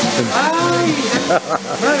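Voices talking and exclaiming over the steady rush of a waterfall falling down a rock face.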